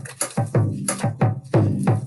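Recorded samba drum groove stripped down to its deep surdo bass drum, beating a steady pulse with sharp clicking strokes between the deep hits.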